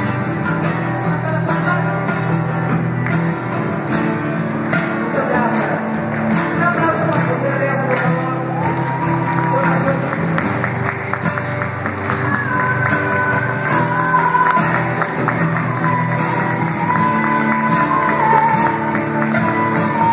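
Live band playing: a singer over guitar, keyboard and hand percussion, with a held melody line carried in the second half.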